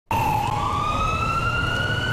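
Emergency vehicle siren sounding one long, slowly rising wail over a low rumble.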